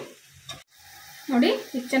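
Chicken pieces frying in a steel kadai, stirred with a metal spoon: a faint sizzle with a single light tap of spoon on pan about half a second in.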